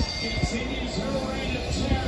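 Wrestling broadcast audio playing from a television: music under a voice, picked up off the set's speakers.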